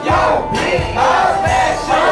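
A group of rappers shouting lyrics together into microphones over a loud hip-hop beat, with a heavy bass hit about every three-quarters of a second.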